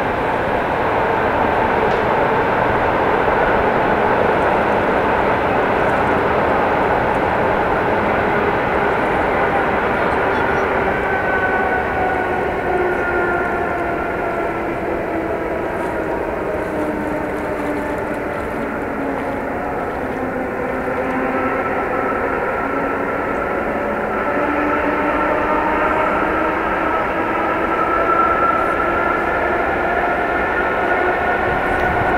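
A steady, loud motor-like drone with a noisy hiss, its pitch slowly wavering and sliding lower through the middle and rising again near the end.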